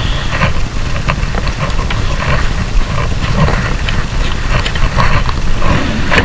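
Cabinet drawer being handled and slid shut on its drawer slides, giving scattered light clicks and knocks, over a steady low rumble that is the loudest thing throughout.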